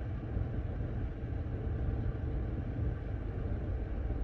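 Steady low rumble heard inside a parked car's cabin, with no clear pitch.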